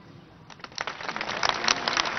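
Crowd applause: scattered hand claps start about half a second in and build quickly into denser clapping.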